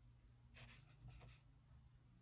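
Faint swish of a paintbrush stroking across watercolour paper, two short strokes, over a low steady hum.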